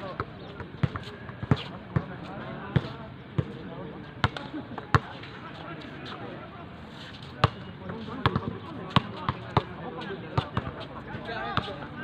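A basketball being dribbled on a hard outdoor court: sharp single bounces roughly every half-second, pausing for about two seconds around the middle, with players' voices in the background.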